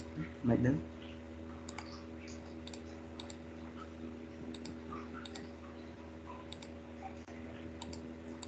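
Scattered light computer mouse clicks over a steady electrical hum. A short, loud voice-like sound about half a second in.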